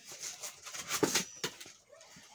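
Tissue paper and a cardboard box being handled: scattered crinkles, rustles and light knocks as hands dig into the paper and push the box flaps open.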